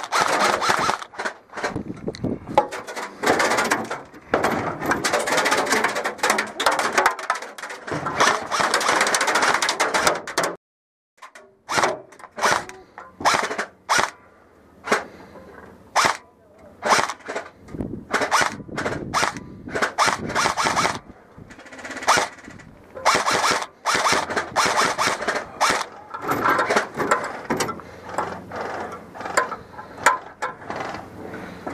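Airsoft electric rifle (a heavily modded KWA M4 AEG) firing many sharp shots, some single and some in fast strings. The sound drops out completely for about a second around eleven seconds in.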